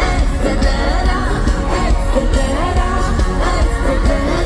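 Live pop band playing loudly in an arena, with drums and bass under a wordless sung melody line.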